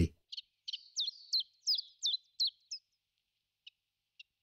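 A small bird singing: a run of about eight short, high notes, each sweeping sharply down in pitch, about three a second, ending near three seconds in. A few faint short chips follow near the end.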